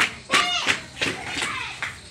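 People's voices, loudest in the first second, mixed with several short sharp taps.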